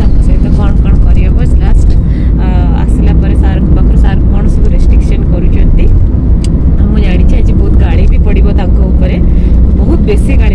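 Steady low rumble of a car on the move, heard from inside the cabin, with a voice talking over it in stretches.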